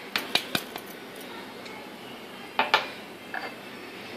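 Small glass bowl clinking against a larger glass mixing bowl as ground spice mix is tipped out of it: three quick clinks in the first half second, a couple of fainter ones after, then another short clatter about two and a half seconds in.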